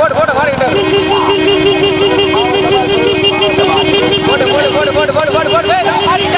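A vehicle's two-tone horn held down, starting about a second in and sounding steadily, over men shouting, behind racing bullock carts.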